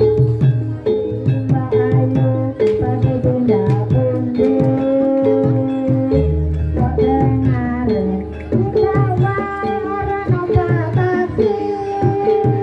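Live Javanese jaranan gamelan music: drums and metal gong-chime instruments play a repeating pattern of pitched notes, with a held melodic line over it. A deep gong sounds about six seconds in.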